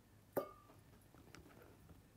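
A small tomato dropped into a glass jar of water: a single short plop about a third of a second in, with a brief ring, followed by a few faint ticks as it settles to the bottom.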